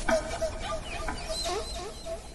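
Many short bird calls overlapping, clucking like a flock of fowl.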